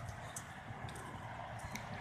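Quiet outdoor background with a low rumble and a few faint clicks, typical of a phone's microphone being handled as the phone is swung about.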